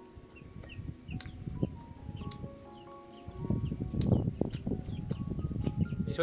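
Close-up crunching and chewing of crispy garlic-butter toasted baguette over background music with a melody; the crunching is loudest in the second half.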